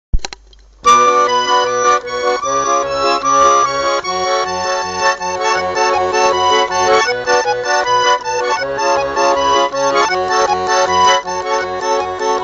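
Russian garmon (button accordion) playing an instrumental introduction: a melody over a regular oom-pah of bass notes and chords. It starts about a second in, after a short click.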